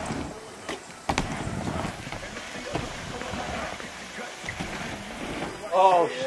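BMX bike tyres rolling across a ramp surface, with a sharp knock about a second in. Near the end a person shouts.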